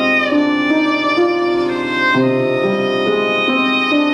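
Violin playing a melody of held notes that change about twice a second, with a short downward slide at the start.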